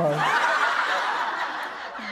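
Audience laughter rising right after a punchline, a dense crowd laugh that slowly fades.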